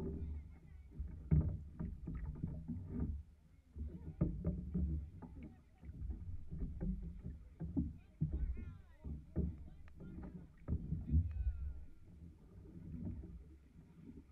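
Knocks and thumps of paddles and bodies against an outrigger canoe's hull as crew change over from a chase boat, over a low rumble, with faint voices.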